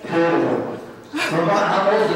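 A man's voice heard over music, in two stretches with a short lull between them.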